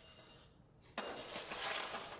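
Coarse aggregate rattling against metal: the last stones poured from a metal scoop into a metal measure trail off, then about a second in a scoop digs into a pan of gravel with a sudden rattling rush.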